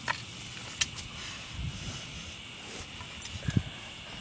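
A stick being worked under a porch to drag out a dead animal: a few sharp clicks and knocks, then a couple of low thumps, over a steady high-pitched background hum.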